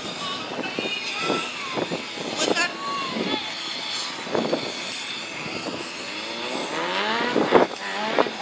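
Background crowd voices, then near the end a vehicle engine revs up hard off-camera, its pitch climbing steeply for about a second.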